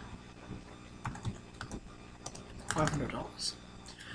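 Computer keyboard typing: a handful of separate keystrokes entering a number into a spreadsheet cell.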